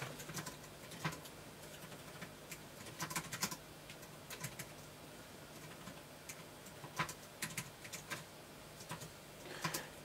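Typing on a compact Bluetooth computer keyboard: faint key clicks coming in irregular bursts with short pauses between them.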